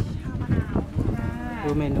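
Speech in Thai: a voice drawing out a word in a long, sing-song tone near the end, saying "look at the menu".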